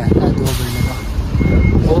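A vehicle's reversing alarm beeping: a single high steady tone in short pulses, the clearest about one and a half seconds in, over a loud low rumble.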